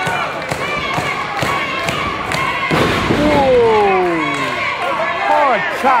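Pro wrestling ring action: a steady beat of sharp knocks about twice a second. About three seconds in comes a loud smack, followed by a long falling 'whoo' from several voices in the crowd.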